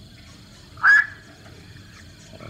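A single short, harsh call from a black-crowned night heron, about a second in.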